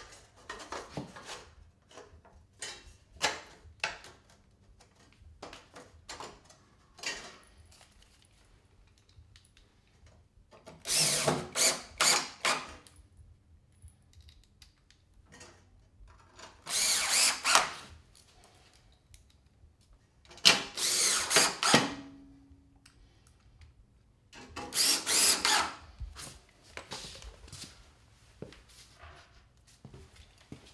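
Cordless drill driver running in four short bursts, about a second or so each, fastening a sheet-metal cold air return box to wood wall framing, with small clicks and knocks of handling between.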